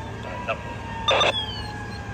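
Street noise at a fire scene with a faint, slightly falling steady tone, and a short, loud burst from a two-way radio a little over a second in, between radio transmissions.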